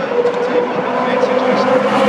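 V8 Supercars' V8 engines at race speed, growing louder as the leading cars approach down the straight on the opening lap.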